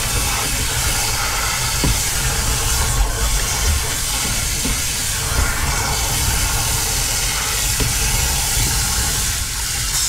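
Water from a garden hose running into a motorhome's waste water tank through its floor opening: a steady rush of water with a few light knocks.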